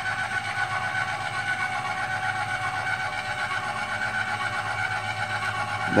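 Electric trailer tongue jack motor running steadily with an even whine as it drives the jack down.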